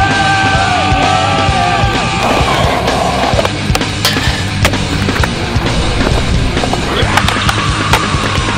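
Skateboard rolling on concrete, with sharp clacks and knocks of the board and trucks hitting from about three and a half seconds in, over loud heavy rock music.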